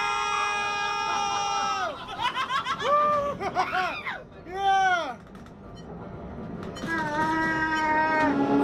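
A rider's long, high-pitched scream held for about two seconds, then bursts of laughter, and a shorter, lower held cry near the end.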